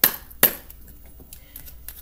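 A tarot deck handled and shuffled in the hands: two sharp card snaps about half a second apart, then a few faint clicks of cards sliding.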